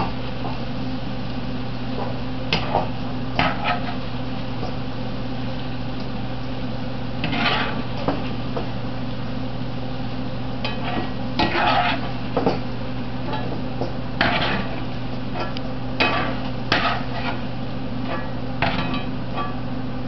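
A metal spoon scraping and clinking against a skillet and a metal bowl as fried okra is scooped out of hot oil, a dozen or so short irregular clinks and scrapes. Under them the oil sizzles steadily over a low hum.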